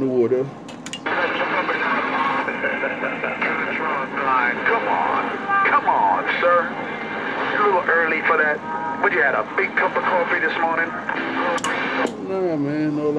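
Another station's voice coming in over a Galaxy CB radio's speaker: a thin, garbled transmission with static, too distorted to make out words. It opens with a short click about a second in and closes with another click near the end as the transmission drops.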